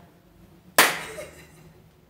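A single sharp clap of the hands a little under a second in, dying away quickly.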